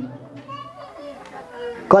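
Faint, higher-pitched voices murmuring in the background of a hall during a lull in a man's amplified speech; his voice comes back loud near the end.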